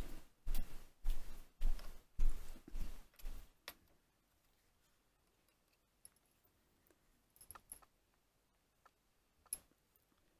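Short rustling and scraping handling sounds, about two a second, as cotton wick is worked into the deck of a rebuildable tank atomizer. They stop after a few seconds, leaving near quiet with a few faint clicks later on.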